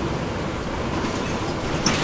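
Interior ride noise of a moving NABI 416 transit bus: its Cummins ISL9 diesel engine and road noise as a steady low rumble, with a sharp click near the end.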